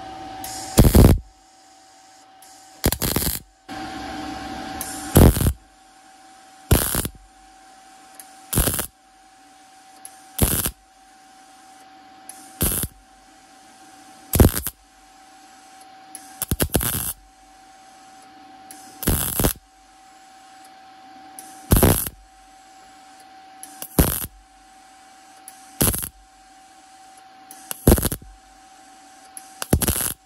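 MIG welder laying short stitch welds along a crack in a thin transmission oil pan. About fifteen brief bursts of arc crackle come one every two seconds or so, with a steady faint hum between them.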